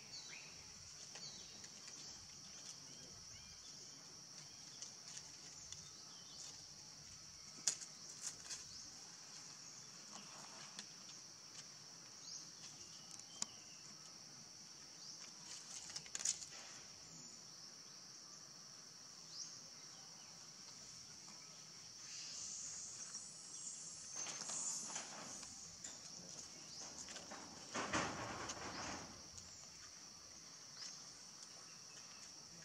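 Steady high-pitched drone of an insect chorus, with scattered small clicks and rustles. There is a louder spell of rustling and scuffing in the last several seconds, loudest a couple of seconds before the end.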